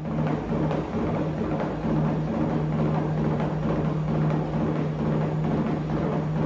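A large horse treadmill running with a steady motor hum, and a horse's hooves striking the moving belt in a dense, irregular patter. The sound is loud, typical of the noise that makes soundproofing necessary near homes.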